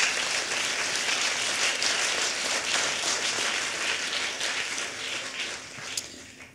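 Audience applauding, a dense patter of many hands clapping that thins out and fades near the end.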